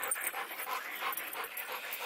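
Dogs panting in a quick, steady rhythm of about four breaths a second.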